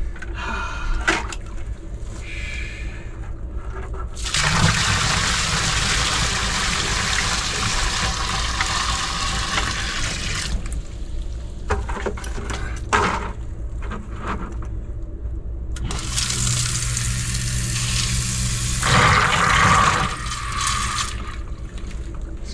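Water poured from a bucket into a sump pump basin, a steady rush for about six seconds. About sixteen seconds in, the newly installed submersible sump pump switches on and runs for about five seconds with a low motor hum and rushing water as it empties the basin, then stops.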